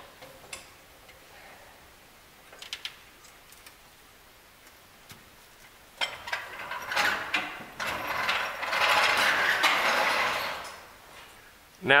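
Hydraulic floor jack being let down under the front lower control arm, the suspension settling with faint scattered clicks and ticks. About halfway through comes a few seconds of louder scraping, clattering mechanical noise that fades out near the end.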